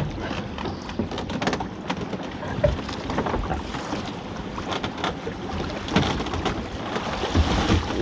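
A crab pot being hauled from the sea over a boat's side: water splashing and streaming off the pot, with scattered knocks of pot and rope against the hull, over wind on the microphone.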